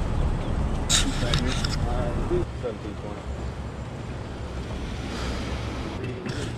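Faint, distant voices talking over a steady low outdoor rumble, with a short hiss about a second in.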